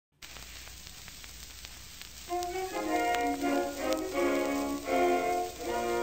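Hiss and crackle of an old acoustic-era record's surface noise, with scattered clicks. About two seconds in, the song's orchestral introduction begins and carries on, played several notes at a time.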